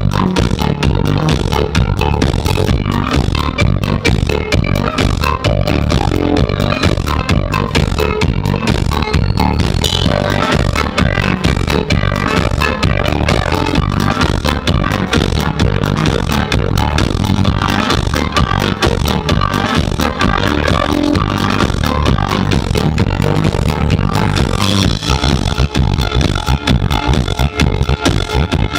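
Live swing band playing at full volume through a PA: a drum kit keeping a steady beat under a banjo, with a trumpet joining in.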